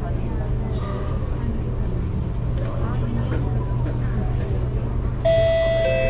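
Steady low hum of an MRT train carriage with its doors closed. About five seconds in, a loud two-note electronic chime from the train's public-address system sounds, the higher note followed by a lower one, the tone that comes before an onboard announcement.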